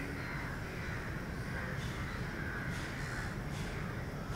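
Birds calling, a few short calls in the second half, over a steady low background rumble.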